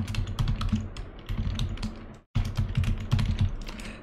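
Typing on a computer keyboard: a quick, irregular run of key clicks that stops for a moment just past halfway, then carries on.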